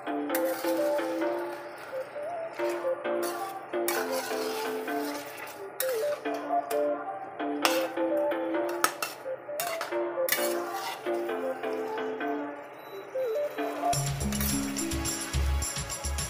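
Background music with a repeating melody, joined by a bass line and beat near the end, over repeated clinks of a metal spatula scraping and tapping a steel wok as chicken feet are stirred in sauce.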